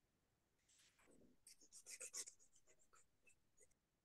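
Near silence, with faint rustling and a string of small clicks between about one and three and a half seconds in.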